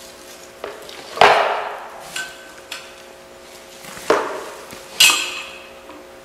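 Bent metal tube pieces of a play-set handle knocking and clanking as their ends are forced together: three sharp clanks with a short ring, the loudest about a second in and two more near the end, with a few light clicks between.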